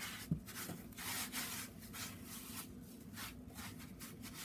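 Coarse curing salt being pushed and packed by a gloved hand around a raw ham in a plastic bin: faint, repeated scraping strokes, with one soft thump about a third of a second in.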